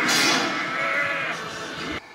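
A person's voice making a loud, breathy, drawn-out noise without words, loudest at the start and easing off before cutting off sharply at the end.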